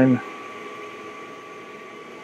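Laser air-assist pump and enclosure exhaust fan running steadily: a even rush of air with a faint steady high tone over it.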